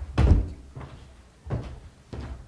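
A few dull thumps and knocks, the loudest about a quarter second in and a smaller one about a second and a half in, from people moving at the table and stepping to the podium.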